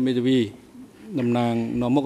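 A man speaking through a microphone, with a short pause and then a long, drawn-out syllable held at a nearly level pitch.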